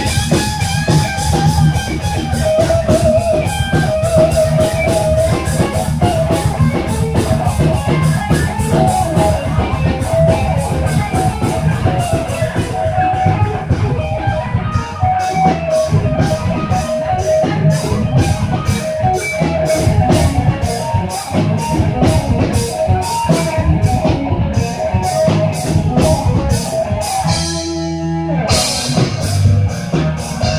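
Live instrumental metal band playing with electric guitar, bass guitar and drums. From about the middle the drums drive a fast, even beat. Near the end the drums drop out for about a second, then the full band comes back in.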